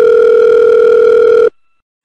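Telephone ringback tone as a call goes through: one long, loud, steady tone that cuts off suddenly about one and a half seconds in.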